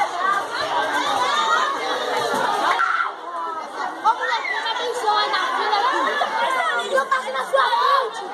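A crowd of children and adults chattering and talking over one another, with many overlapping high-pitched children's voices.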